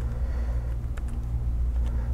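A steady low rumble with a few faint keystrokes on a computer keyboard as a short value is typed.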